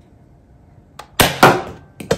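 Nerf Rival blaster firing once: a short click about a second in, then a loud spring-powered shot and a second loud burst a quarter second later.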